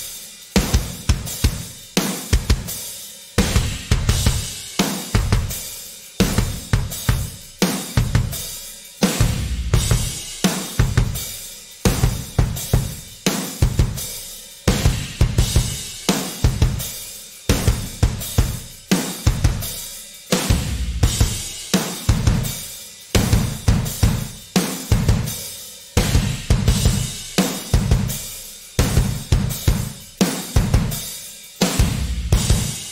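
Full drum kit groove playing back: sampled kick drum recorded in a wood room, with snare, hi-hat and cymbals, loud and steady. The kick's tone and ambience shift as its close, room and texture layers are mixed in and out.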